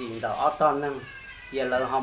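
Speech only: a man's voice narrating in Hmong, with gliding pitch.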